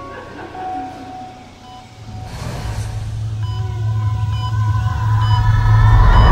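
Horror-trailer sound design: a deep rumble swells steadily louder from about two seconds in, under held high tones and faint short repeated beeps.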